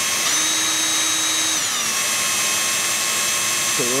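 Electric power drill running steadily as a 7/64-inch twist bit slowly reams a pilot hole into a plastic spray-paint cap. The motor whine steps up in pitch just after the start and sags about two seconds in.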